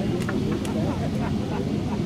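A person laughs and voices chatter over the steady low drone of a river cruise boat's engine.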